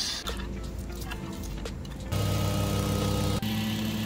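Background music, then from about two seconds in a plate compactor's small petrol engine running steadily as the plate vibrates over a sand bed.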